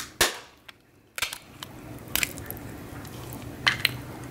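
A sauce-coated king crab leg shell snapped apart by hand with one loud, sharp crack about a quarter second in. A few smaller cracks and crunches follow later.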